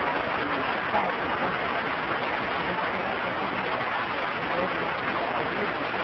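Steady hiss of an old recording with indistinct voices murmuring faintly beneath it.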